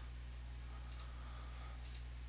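Computer mouse double-clicking twice, once about a second in and once near the end, over a low steady hum.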